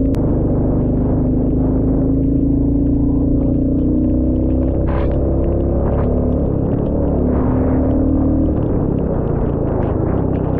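Royal Enfield Classic 350 single-cylinder engine running under way, a steady drone whose pitch creeps up over the first few seconds, drops about halfway through, then climbs again. A few short ticks come through above it.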